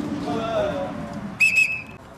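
Referee's whistle blown about one and a half seconds in, a short shrill blast running straight into a longer one, stopping play.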